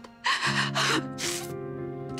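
A woman crying, with a few sharp, gasping sobbed breaths, over background music whose sustained low notes come in about half a second in.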